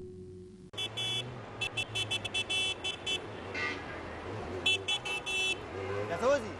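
Car horns tooting in rapid short beeps, in three clusters, over a steady low hum of street traffic.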